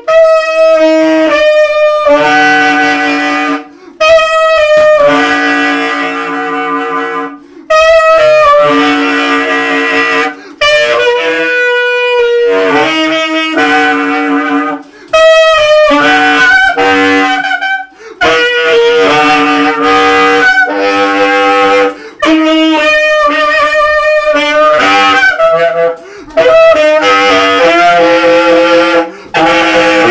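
Solo tenor saxophone, unaccompanied, playing a line of notes in phrases of a few seconds with brief gaps between them.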